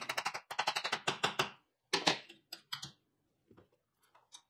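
Hammer tapping the edge of a thin steel hinge blank clamped in a bench vise, bending it over: a fast run of quick metal taps for about a second and a half, then a few slower, scattered taps that die away before the end.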